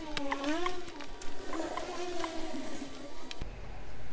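A short wordless melody, sung or played in a voice-like tone, rising and falling in pitch and stopping abruptly after about three seconds.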